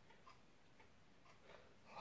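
Near silence: quiet kitchen room tone with a wall clock ticking faintly, about two ticks a second.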